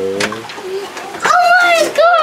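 A high-pitched, drawn-out cry begins a little over a second in and glides down in pitch. Before it, a held tone fades out in the first half-second.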